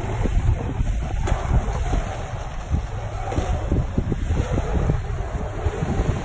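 Wind buffeting the microphone: a loud, gusty low rumble that comes and goes unevenly.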